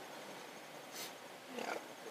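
Quiet steady hiss with a brief, faint murmured vocal sound from a person near the end, a hesitant reply to a question.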